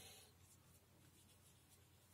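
Faint brush strokes on paper: a soft scratchy swish at the start, then a few short, quiet strokes of the paintbrush against the paper surface.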